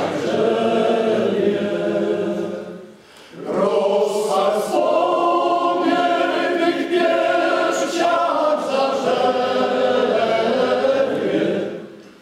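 Men's choir singing unaccompanied in held chords, with a short break between phrases about three seconds in.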